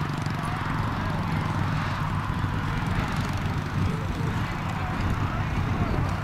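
A steady low engine drone, holding one pitch throughout.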